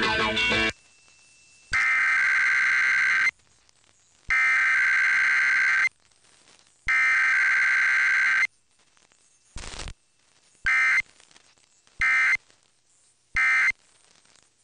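Emergency Alert System SAME digital data bursts received over AM radio: three long screeching header bursts of about a second and a half each, about a second apart, then three short end-of-message bursts in the second half. Faint radio static fills the gaps between bursts.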